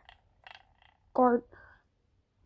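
A single short vocal sound from a boy, a held syllable lasting about a quarter of a second, a little over a second in, with faint rustles before it.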